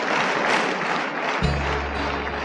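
Audience applauding, then about a second and a half in the band's music comes in with a low, sustained bass note under the clapping.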